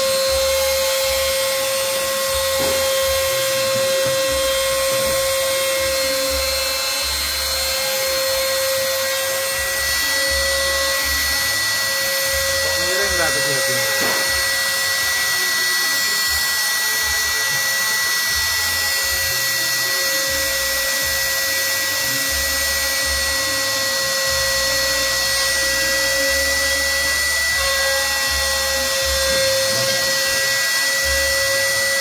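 CNC router's trim-router spindle running at high speed, about 30,000 rpm, as it carves a 3D relief into a small block of wood: a steady high whine over a rough cutting noise. Around the middle, a brief rising and falling tone comes in.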